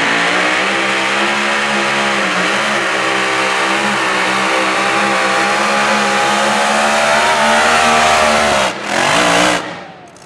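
Mini modified pulling tractor's engine at full throttle, dragging the sled, with a steady drone whose pitch wavers slightly. Near the end the sound breaks off suddenly, comes back in one short burst, and then cuts off as the run ends.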